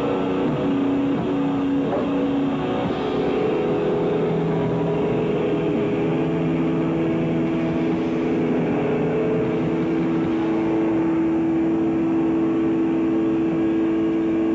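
Live noise-rock band's distorted electric guitar and bass holding a loud, sustained droning chord with feedback. The held notes shift pitch about three seconds in and again about six seconds in.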